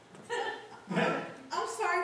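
A person's voice in three short vocal bursts, without clear words.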